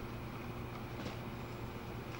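Steady low hum with hiss and no speech: the room tone of a lecture hall on an old audiocassette recording.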